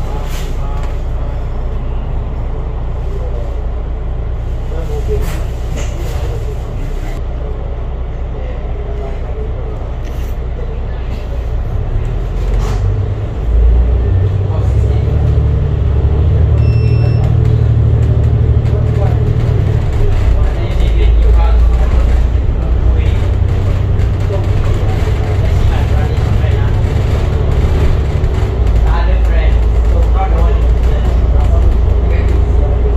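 Alexander Dennis Enviro500 double-deck bus heard from on board, its engine and drivetrain running in traffic with a steady low rumble. The rumble grows louder a little under halfway through and stays louder as the bus pulls along.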